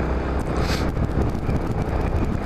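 Yamaha Majesty maxi scooter's engine running steadily at cruising speed, mixed with wind and road noise on the camera's microphone, with a brief hiss about half a second in.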